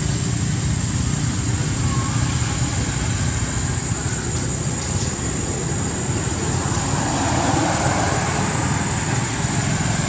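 Steady outdoor background noise with a low rumble and a constant thin high-pitched whine, with no clear single event.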